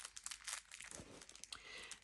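Faint, irregular crinkling of thin clear plastic packaging as it is handled.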